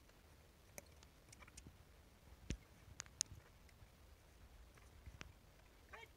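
Near silence, broken by a few faint, irregular clicks; the sharpest come about two and a half and three seconds in.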